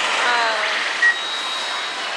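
Steady din of a pachinko parlour with electronic sound effects from a pachislot machine: a falling pitched sound in the first second, a short beep about a second in, then a high steady tone.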